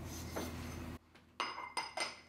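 Light clinks of dishes: a small ceramic ramekin set down among glass and ceramic bowls. It clinks three times in the second half, each clink with a brief ring.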